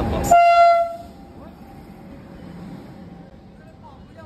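Train pulling into a platform: loud rumble, then one short blast of the electric locomotive's horn about a third of a second in, lasting under a second. The loud train noise drops away suddenly as the horn starts, leaving only faint platform background.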